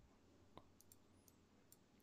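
Near silence with a few faint clicks from working a computer's mouse and keyboard, the most distinct one about half a second in.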